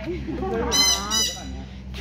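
A goose honking twice in quick succession, two loud, short, high calls less than half a second apart.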